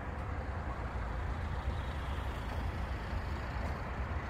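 Steady low rumble and hiss of distant road traffic, with no distinct events standing out.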